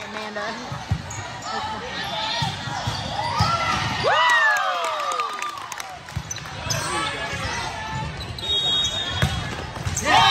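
Indoor volleyball play in a large gym: girls' shouts and calls over general voices, with sharp knocks as the ball is hit. One loud cry about four seconds in falls in pitch.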